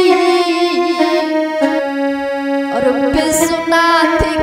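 Devotional bhajan accompaniment on an electronic keyboard holding long, steady notes, with a few drum strokes near the end.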